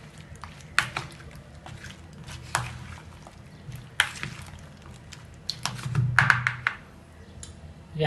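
A metal spoon stirring cut fruit in juice in a plastic bowl: wet squelching broken by scattered clicks of the spoon against the bowl, with a quick run of them a little past halfway.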